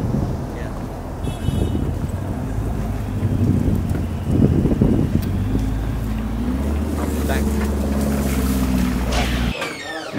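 Lamborghini Urus twin-turbo V8 running as the SUV pulls away. Its engine note settles into a steady drone through the second half, then cuts off suddenly near the end.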